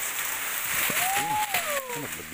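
Leafy branches of a star apple tree rustling, a steady rush of leaves and twigs that dies down near the end.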